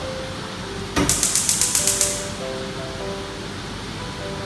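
Gas hob igniter clicking rapidly, about eight clicks a second for just over a second, starting about a second in. Background music with sustained notes runs underneath.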